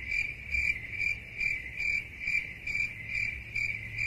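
A cricket chirping steadily, about two chirps a second.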